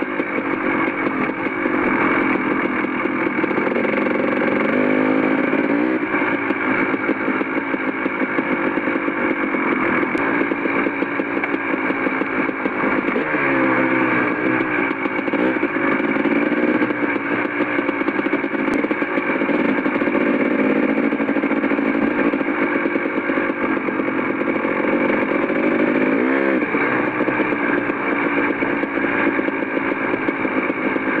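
Dirt bike engine running at trail-riding speed. Its pitch climbs and drops with the throttle a few times: a few seconds in, around the middle and near the end.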